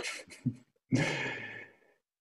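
Soft, breathy laughter over a video call: a few short laughing breaths, then a longer breathy laughing exhale about a second in that fades away.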